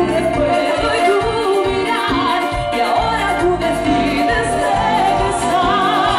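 Live Latin dance band playing, with a woman singing lead over electric guitars, keyboards and a steady pulsing bass beat.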